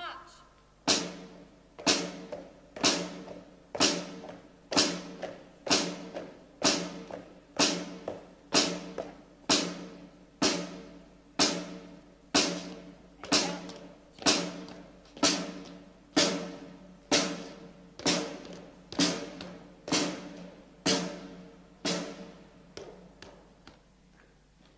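Military side drum beating a slow, steady march time, about one stroke a second, each stroke ringing on. The beat ends with a few lighter, quicker taps.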